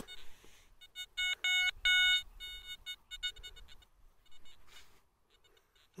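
Metal detector giving a run of short, same-pitched electronic beeps, strongest about one and a half to two seconds in and fading after, with a few weaker beeps later. The beeps signal a small metal target in the dug soil, which proves to be an old button.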